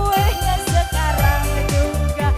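Upbeat pop music with a steady kick-drum beat, about four beats a second, and a sung melody over it.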